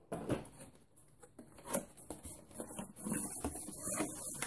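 Cardboard packaging being handled: an inner box slid out of its outer box and its flaps opened, giving scattered soft knocks and scuffs, then a steadier scraping rustle from about three seconds in.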